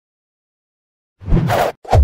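About a second of silence, then two short, sharp sound-effect hits of a logo intro, the second running on into a low rumble.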